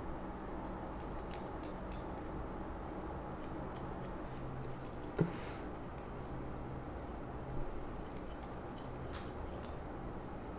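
Barber's hair-cutting scissors snipping hair over a comb: a run of many small, crisp snips, with one sharper click about five seconds in.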